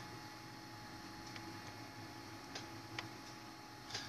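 Quiet room tone with a faint steady hum and a handful of soft, irregularly spaced ticks.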